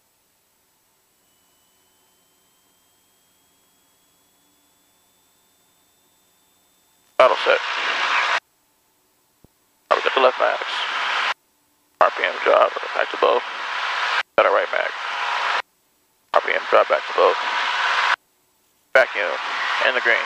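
The cockpit headset audio feed is almost silent for about seven seconds. Then six short bursts of voice-like sound come through, each cutting in and out abruptly, as a squelched radio or voice-activated intercom does.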